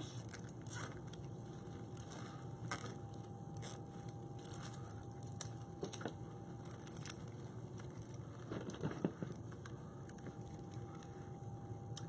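Faint crackling rustle of stiff deco mesh being handled and tucked in by hand on a wreath board, with scattered light ticks.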